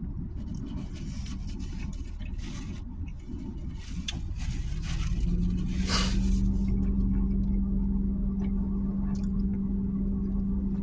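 Low rumble of an idling motor vehicle engine. A steady low hum joins about halfway through and the sound grows slightly louder; there is a brief hiss about six seconds in.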